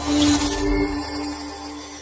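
Logo intro music: a held chord with a brief bright shimmer in the first half second, fading away steadily.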